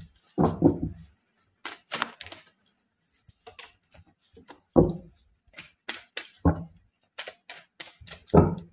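Tarot cards being handled: a run of quick clicks and snaps as cards are drawn from the deck and laid down, with three heavier soft thumps about half a second, five and six and a half seconds in.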